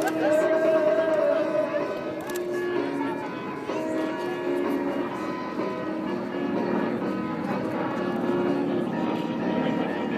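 Music playing over a public-address system, its held notes changing in steps, with the drone of an AC-130 gunship's four turboprop engines as it flies past.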